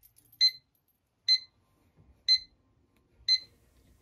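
LEGO Stormtrooper digital alarm clock going off: four short, high beeps about a second apart.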